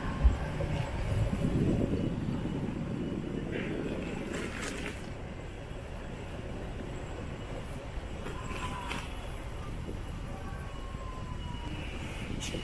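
Outdoor street noise: a steady low rumble that swells over the first few seconds and then settles, with a few faint short higher sounds over it.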